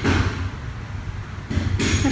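A steady low hum under faint background noise, with a short sharp hiss near the end.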